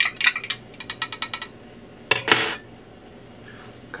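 A spoon stirring a drink in a cup, clinking rapidly against the side for about a second and a half, then a short louder scrape or knock a little after two seconds in.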